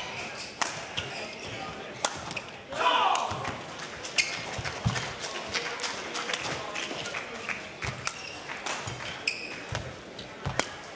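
Badminton rally: sharp cracks of rackets striking the shuttlecock, roughly once a second, mixed with short squeaks of court shoes on the floor. A brief shout rises about three seconds in.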